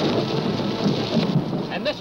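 Film sound effect of a violent crash: a loud, rushing roar with low rumbles in it, slowly fading.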